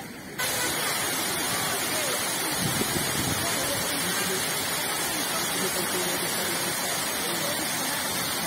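Water rushing and spraying through the temporary steel closure set in the gap of a broken dam floodgate: a steady hiss of water, leaking past the makeshift closure, that cuts in abruptly just after the start.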